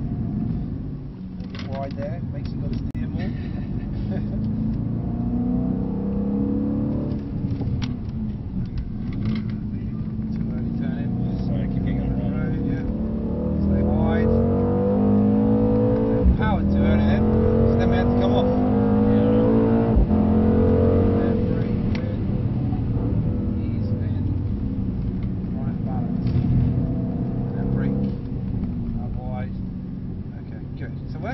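Mercedes-AMG C63 S's 4.0-litre twin-turbo V8, heard from inside the cabin, repeatedly rising and falling in pitch as the car accelerates and lifts off through corners. It is loudest in the middle stretch, where two sharp cracks cut through.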